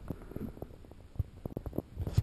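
Irregular soft knocks and scuffs close to the microphone: handling and movement noise.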